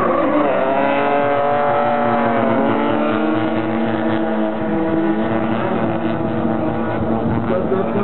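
Engines of two drift cars held at high revs while sliding in tandem, the pitch dipping and wavering as the throttle is worked, over the rush of spinning tyres.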